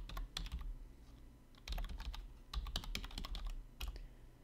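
Typing on a computer keyboard: clusters of quick keystrokes with short pauses between them.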